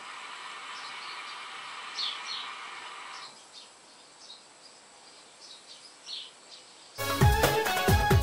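Mya Mini hookah bubbling as a long draw is pulled through the hose, stopping about three seconds in, with birds chirping faintly. Loud music starts near the end.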